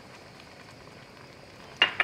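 Faint, steady simmer of a thick cream sauce with vegetables in a Dutch oven on the stove.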